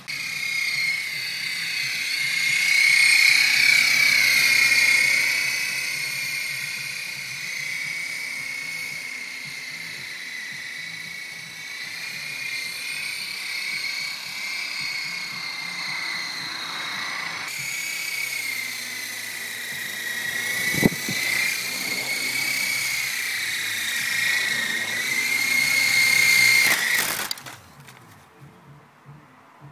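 Small electric motors and rotors of a toy RC helicopter (Resq Rotorz) whining steadily at a high pitch that wavers gently as it flies. There is a single sharp click about two-thirds of the way in, and the whine cuts off abruptly near the end.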